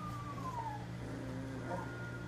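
A three-week-old Labrador puppy giving one falling whine in the first second, with a few fainter squeaks near the end, over a steady low background hum.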